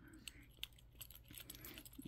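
Near silence with a few faint, scattered small clicks and rustles, one sharper than the rest just over half a second in, as a hand rubs a dog's head and muzzle.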